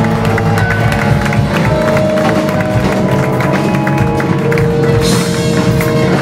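Live band playing: electric guitar, electric bass and drum kit with horns, with long held notes and a cymbal crash about five seconds in.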